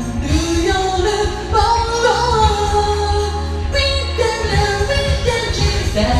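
A woman singing the melody of a Japanese pop song over a backing track with a steady bass line.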